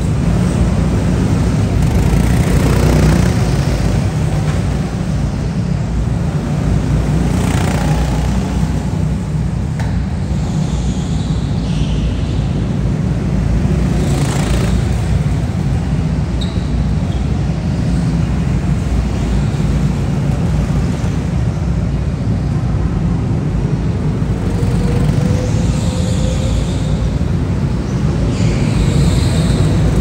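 Go-karts lapping an indoor track: a steady low rumble throughout, with karts passing close by several times and a rising whine from a kart speeding up near the end.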